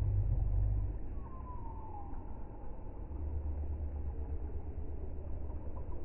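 Low, deep rumble of slowed-down audio, louder in the first second, with a faint falling whistle-like glide between about one and two seconds in.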